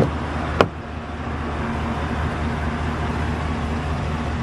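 A vehicle engine idling steadily with a low hum, and a single sharp click about half a second in as the pickup's door latch is opened.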